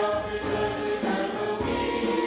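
Congregation singing a hymn together, with piano, flute and hand drum accompanying; the voices hold long notes that change every half second or so.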